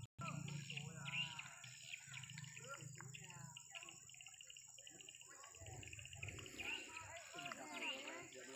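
Faint, indistinct voices of people talking at a distance, mixed with bird chirps. The sound cuts out for a split second right at the start.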